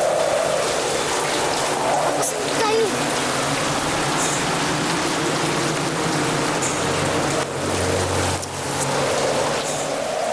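Heavy rain pouring down as a steady, dense hiss.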